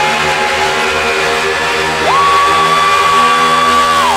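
Electronic dance remix music from a continuous DJ mix, dense and loud; about halfway through, a high held note slides up and holds.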